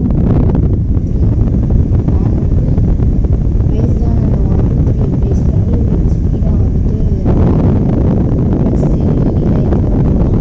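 Rechargeable table fan running, its airflow buffeting the microphone as a steady low rumble of wind noise. The rumble grows fuller about seven seconds in.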